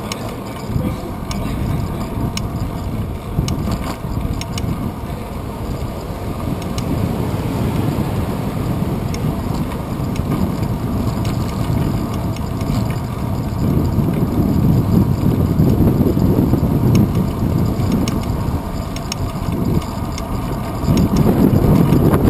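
Wind buffeting and road rumble on a bike-mounted GoPro Hero 2 while riding, with a few faint rattling clicks. The rumble grows louder about two-thirds of the way through and again near the end.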